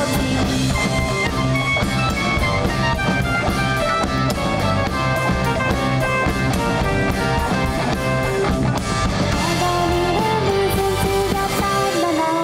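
Live pop band playing an upbeat song on drum kit, electric guitar and keyboards, the drums keeping a steady beat.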